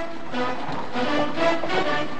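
Background score music: sustained pitched notes moving from one to the next, with no speech over it.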